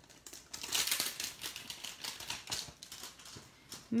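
Clear plastic stamp pouch crinkling and rustling as it is handled, with small clicks and taps. Loudest in the first half, then fading.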